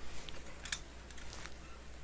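Faint handling sounds: a few light clicks and rustles as hands shift plastic-cased graded cards and foam cushions on a table, over a low steady hum.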